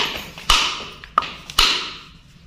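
A knife blade knocking against a half coconut shell: four sharp taps, roughly half a second apart, each with a short ring.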